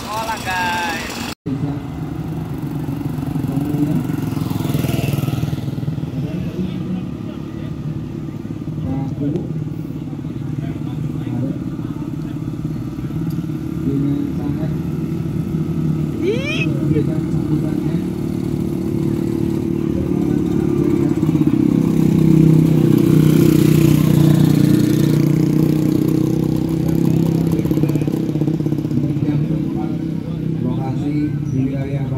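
Vintage Vespa scooter's two-stroke engine running steadily under way. About two-thirds of the way through, the engine note drops and gets louder.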